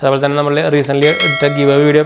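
A bell chime sound effect from a subscribe-button animation rings out about a second in and holds as a steady, bright tone over a man talking.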